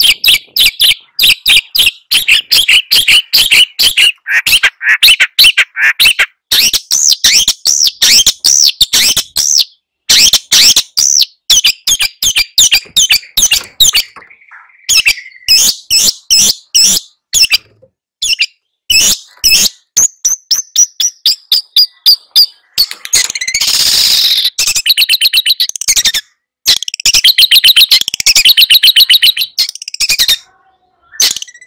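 Long-tailed shrike (cendet) singing loudly: fast runs of chattering, trilled notes broken by short pauses, with a falling whistled phrase a little past two-thirds through and a harsher, rasping phrase just after it.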